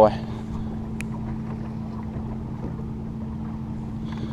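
A steady low motor hum aboard a bass boat, holding one even pitch, with a single sharp click about a second in.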